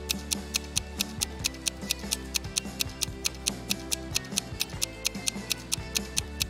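Countdown-timer sound effect ticking evenly, about four ticks a second, over soft background music.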